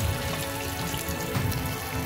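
Rice and sliced green bell pepper sizzling steadily as they fry in olive oil in a pan, the rice being toasted before the water goes in.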